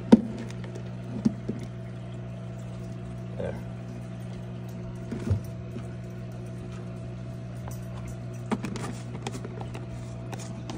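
Steady hum of an aquarium's hang-on-back filter, at several fixed pitches, with a few sharp knocks and clicks of a plastic turtle-food jar being handled and its lid closed.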